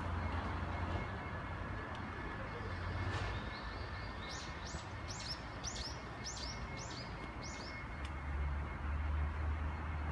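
A bird calling in a quick run of about eight high notes, each sliding downward and getting louder, from about three seconds in until nearly eight seconds. Behind it is a steady outdoor background with a low rumble near the start and again near the end.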